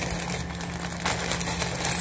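Plastic packaging crinkling and rustling in irregular bursts as a parcel of face masks is opened by hand.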